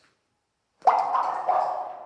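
Cave dripstone formations struck by hand, ringing like bells: two ringing knocks about half a second apart, each dying away slowly in the cave's echo.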